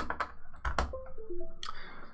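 A few sharp plastic clicks, then a short run of electronic beep tones stepping down in pitch and back up: the computer's device-connected chime as a USB SD card reader is plugged in.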